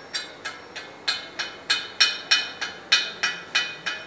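Steel being struck over and over, about three ringing metallic taps a second, louder after the first second: a hammer knocking at a freshly welded steel piece.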